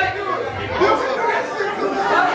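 Several people talking at once: indistinct, overlapping chatter of voices.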